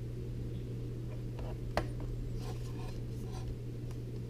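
Faint handling of a plastic e-reader in the hands: light rubs and rustles, with one sharp click just under two seconds in, over a steady low hum.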